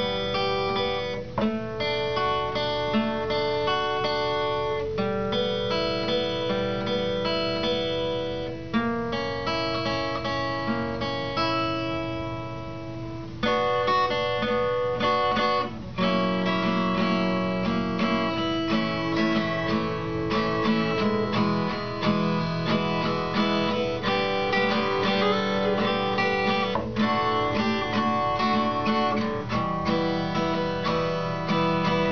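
Acoustic guitar strummed, moving through a chord progression with a new chord every couple of seconds.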